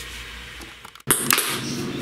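Steady fan hum, then after a sudden cut about a second in, an electric sewing machine's mechanical clatter with sharp clicks.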